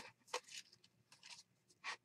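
Faint, brief rustles and taps of small paper cut-outs being handled: about five short sounds spread through the two seconds.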